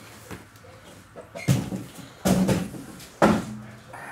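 Cardboard boxes of trading cards being handled and set down on a table: three sharp knocks and scuffs, about a second apart.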